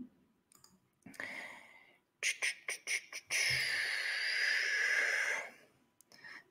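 A man breathing close to a microphone: a short breath about a second in, then a longer breath out from about three to five and a half seconds in. In between come a few quick clicks.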